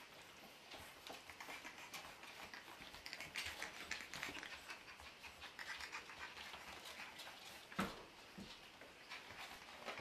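Faint clicking and scuffling of four-week-old puppies' claws and paws on a tile floor as they move about and play, with one louder knock about eight seconds in.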